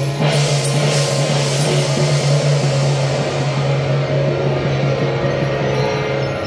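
Taiwanese temple-procession percussion with a hand gong, crashing strokes near the start and again about a second in, over a steady low hum.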